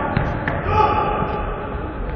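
Two sharp thuds of a football struck on a sports-hall floor in the first half-second, then a player's shout, echoing in the hall.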